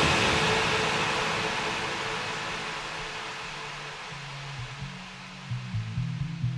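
Progressive trance music in a breakdown: the beat has dropped out, and a hissing white-noise wash fades slowly down. A pulsing synth bass line enters about four and a half seconds in.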